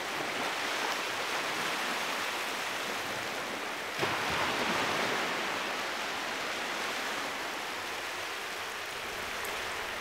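Steady rushing of water, with a soft swell in level about four seconds in.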